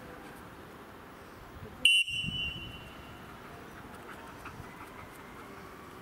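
A single short, shrill whistle blast about two seconds in, lasting about a second.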